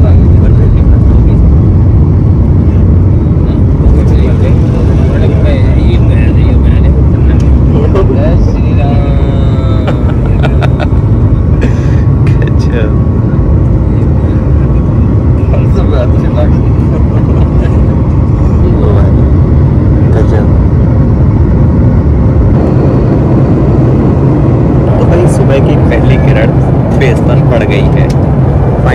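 Boeing 737 jet engines at takeoff thrust, heard from a cabin window seat: the sound jumps up loudly as the engines spool up at the start, then a loud, steady low rumble carries through the takeoff roll and climb-out.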